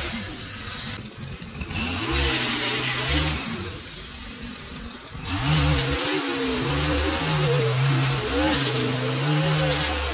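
String trimmer edging grass along a concrete sidewalk, its motor revving up and easing off. It drops back twice in the first half, then runs hard and steady from about halfway on.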